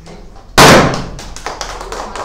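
A confetti popper goes off with one loud bang about half a second in, followed by a run of sharp claps and clicks.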